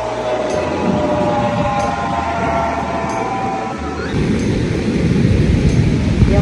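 Wind buffeting the microphone with a rough rumble, growing stronger about four seconds in. Over the first part a few steady held tones sound together.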